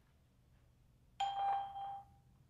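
After about a second of quiet, a single electronic beep plays from the Skype test-call service through an iPhone 5's speakerphone. It is one steady tone lasting well over half a second and marks the start of playback of the recorded test message.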